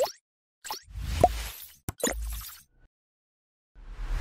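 Motion-graphics sound effects from an animated end screen: a short pitched plop as it begins, then two swishes with a low thud, a sharp click between them, and a longer swish near the end.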